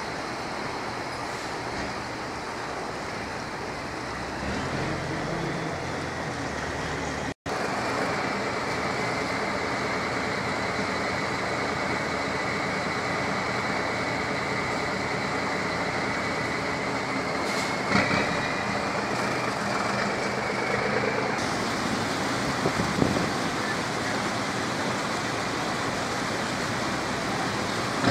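Steady rush of a small creek flowing along a concrete channel and spilling over a low concrete weir, with a brief break about seven seconds in.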